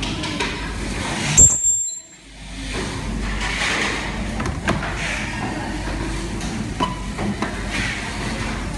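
Steady mechanical background noise with a few light clicks and knocks, as of a plastic device housing being handled. A sharp click just over a second in is followed by a brief drop to near silence.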